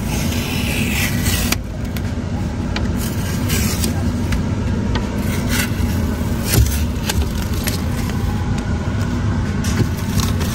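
Blue painter's tape being peeled off the rear window and a plastic bag crinkling, with small crackles and scrapes and one louder knock a little past the middle, over a steady low hum.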